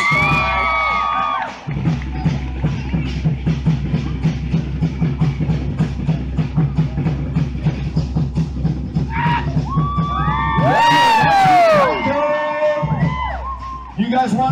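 Fast, steady drumbeat of a live Polynesian fire-dance show, starting about two seconds in. The crowd whoops and cheers at the start and again about ten seconds in.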